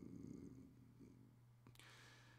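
Near silence: room tone with a steady low hum, a faint low rasp that fades in the first half-second, and a small click near the end.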